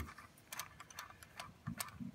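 A few faint, irregular light clicks and ticks of hands handling the loosened fuel rail cap on a FiTech throttle body.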